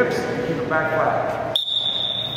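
Voices, then a single high-pitched electronic beep that starts about one and a half seconds in and holds steady for about a second.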